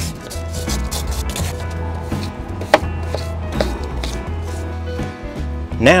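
A small hand brush sweeping crumbled rotten wood off an aluminium door sill in repeated short strokes, with a sharp click about halfway through, over background music with a steady bass line.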